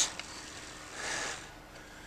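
A pause in a man's talk, with a soft breath about a second in over low background noise.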